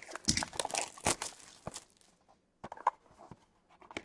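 Crackling and tearing of plastic wrap with light clicks of cardboard as a sealed trading-card box is unwrapped. The crackles are thick in the first two seconds, then thin to a few scattered clicks.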